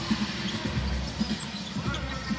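Basketball being dribbled on a hardwood court, a series of short irregular knocks. Arena music plays softly underneath.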